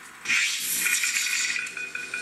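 Servo motors in a 3D-printed T-800 robot whirring with a high whine and some rattling as the robot moves. The sound sets in suddenly about a quarter second in.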